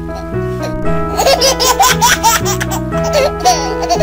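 Light background music for children with a baby giggling over it again and again, the giggles starting about a second in.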